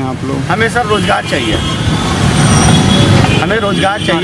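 Road traffic: a motor vehicle passes close by, its low engine rumble swelling and fading in the middle, over a man's voice.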